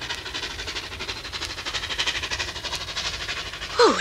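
Steam locomotive sound effect: a quick, even rhythm of chuffing puffs.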